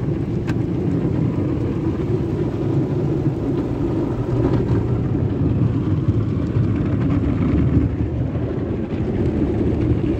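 AVW tunnel car wash equipment spraying water and foam onto a car, heard muffled from inside the cabin as a steady, heavy low noise.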